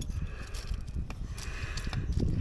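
Light handling noise with a few small, faint clicks over a low rumble.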